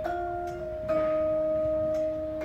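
Vibraphone played with four mallets: a chord struck at the start and a second chord about a second in, both left to ring on with a long sustain.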